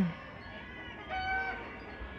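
A short, steady, high-pitched animal call about a second in, lasting about half a second, over quiet outdoor background.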